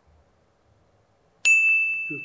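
A single bright ding about one and a half seconds in, after near silence, ringing on and fading away: an edited-in sound effect marking the lie detector's verdict, here a truthful answer.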